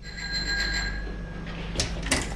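A small metal bell rings once and its ring dies away over about a second, over a low steady hum. There is a sharp click near the end.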